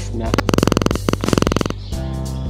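A loud, rapid buzzing rattle in two stretches of under a second each, with a short break between them, over background guitar music.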